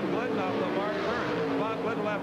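Two Pro Stock drag cars' big-inch V8 engines at full throttle as they launch off the starting line and pull away down the strip, running at high rpm, with a commentator's voice over them.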